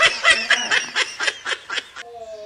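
A child laughing in a quick run of short 'ha' pulses, about six a second, stopping just before the end.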